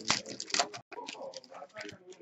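Foil trading-card pack wrapper crinkling and rustling as it is opened and the cards are slid out by hand, a quick run of crackles.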